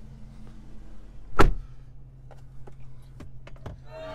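A single heavy thunk about a second and a half in, then a few light knocks and clicks, as a large plastic water bottle is pushed into a car's door pocket, over a steady low hum.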